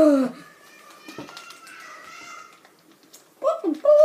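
A young person's voice making wordless vocal sounds: a short loud exclamation, then a quieter, high-pitched, wavering whine, then another short loud cry near the end.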